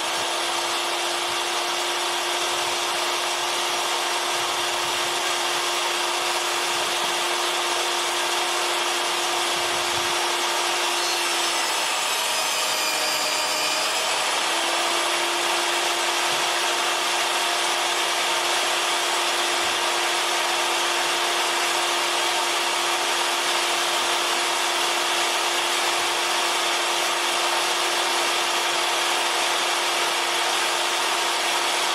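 Bench-top table saw running steadily on one pitch while timber is ripped to width. About twelve seconds in the motor's pitch dips for a couple of seconds, then recovers.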